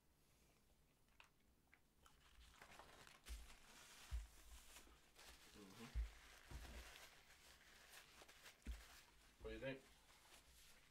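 Faint rustling and crinkling of paper napkins and wrapper as two people eat at a table, with several dull bumps against the table and two short murmurs of a voice.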